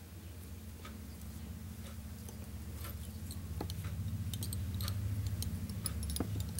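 Faint, scattered small clicks and ticks of hands working fly-tying materials and thread at a vise, coming more often in the last two seconds, over a low steady hum that slowly grows louder.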